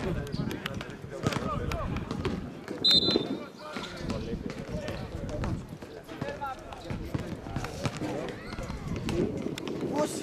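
Footballers shouting on the pitch, with a short, loud referee's whistle blast about three seconds in and scattered thuds of the ball being kicked.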